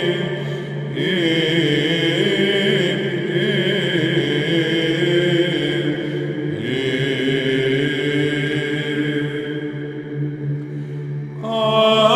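Byzantine chant: a male voice sings a slow, ornamented melody over a steady low held drone (the ison). The line thins out and softens briefly near the end before a louder new phrase begins.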